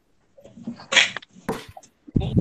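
A short, sharp burst of breath noise about a second in, like a sneeze, followed by a sharp click about half a second later, coming through a video call's participant microphones.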